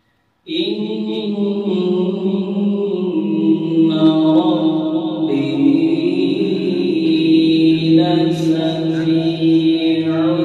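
A man's voice reciting the Quran in a slow, drawn-out melodic chant into a microphone. It begins abruptly about half a second in, after a brief silence. Each note is held for several seconds and steps to a new pitch a few times.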